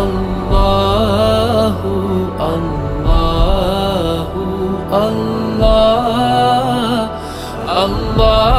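Islamic devotional song (a naat) sung by a solo voice in long, held, wavering notes that glide between pitches, over a steady low drone.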